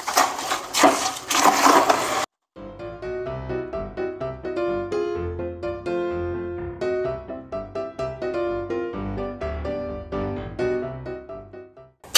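Scraping and grinding of wet concrete mix being stirred by hand with a trowel in a plastic bucket for about two seconds, then it cuts off abruptly and instrumental background music with a keyboard melody takes over for the rest.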